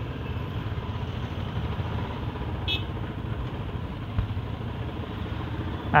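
Royal Enfield motorcycle riding at low speed, its engine a steady low rumble, with a brief high-pitched chirp about halfway through.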